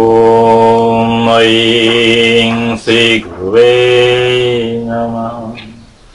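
A man chanting a mantra on one steady, held pitch. One long drawn-out phrase, a brief break about three seconds in, then another long phrase that fades out near the end.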